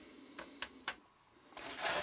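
Three light clicks in the first second as a plastic disposable lighter is handled and set down on a tabletop.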